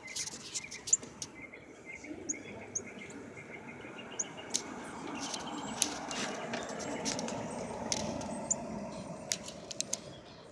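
Sharp, short bird chip notes scattered throughout, typical of northern cardinals calling around a fledgling, with a quick run of short notes in the first two seconds. A low rushing noise swells through the second half and fades near the end.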